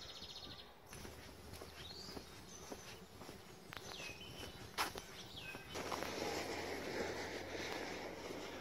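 Quiet outdoor ambience with a few scattered bird chirps. A louder rustling noise comes in about six seconds in.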